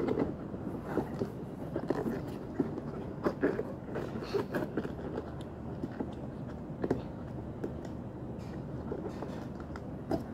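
Rubber facepiece of a Soviet PBF gas mask being handled while its filter is pushed and buttoned into place: scattered soft knocks and rubbing over a steady low background rumble.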